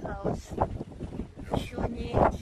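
Indistinct voices talking, with wind buffeting the microphone.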